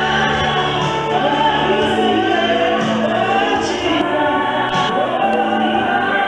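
Gospel worship singing: a woman's voice sung into a handheld microphone, with other voices and steady low held notes underneath, loud and without a break.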